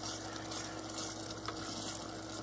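Flour-and-broth gravy simmering in a saucepan while it is stirred with a silicone spatula, a steady soft sizzle as it thickens.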